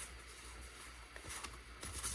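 Faint sliding of Pokémon trading cards being flipped through by hand, one card pushed over another, with a few light ticks in the second half.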